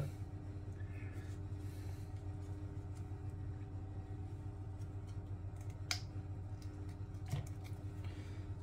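A teaspoon stirring stock into water in a plastic measuring jug, with light clicks about six and seven seconds in, over a steady low kitchen hum.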